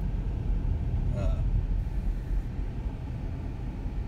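Steady low rumble of a car driving along an asphalt road, heard from inside the cabin: tyre and engine noise.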